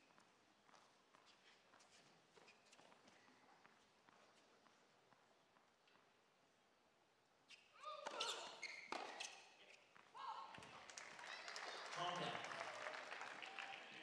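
Tennis ball bounced a few times on the court before a serve, faint. Then, about eight seconds in, the serve and a short exchange of sharp racket hits on the ball. The point ends and crowd applause and cheering follow, loudest near the end.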